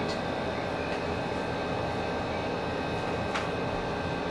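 A steady machine hum carrying a few faint steady tones, with a single light click about three seconds in.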